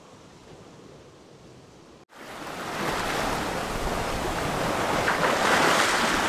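Sea and wind rushing past a sailing yacht under way on open ocean. A faint hiss for about two seconds, then, after a sudden break, a loud, steady rush of wind and waves that builds over the next second.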